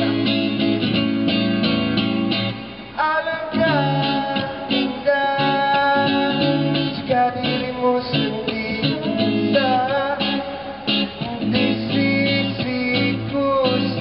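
Live song: an electric guitar strummed in a steady chord pattern, with a higher melody of gliding notes coming in over it about three seconds in.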